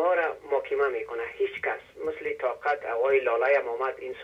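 A caller speaking Dari over a telephone line, one voice talking without pause, with the thin, narrow sound of a phone connection.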